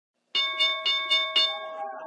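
A bell struck five times in quick succession, about four strikes a second, its tone ringing on and fading after the last strike.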